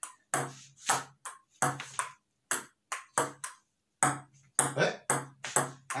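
Table tennis ball clicking back and forth between paddles and a wooden dining table in a slow rally, about a dozen hits roughly half a second apart, some with a deeper knock. A short laugh at the very end.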